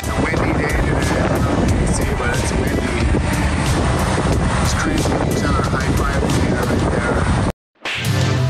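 Truck-mounted drywall delivery crane running steadily as it lifts drywall, with a deep engine rumble. Background music and faint voices can be heard over it. The sound cuts off abruptly near the end.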